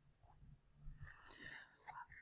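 Near silence: room tone, with faint breath and mouth sounds about a second in.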